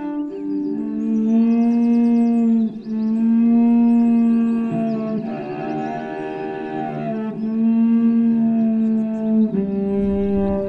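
Solo cello bowed in long held notes, each sustained for two to three seconds before moving to a new pitch, in an improvised piece.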